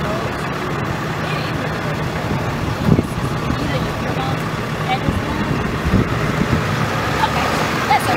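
Tow truck engine idling steadily, with indistinct talking and a short knock about three seconds in.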